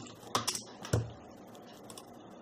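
A few separate keystrokes on a computer keyboard, the loudest a heavier thump about a second in.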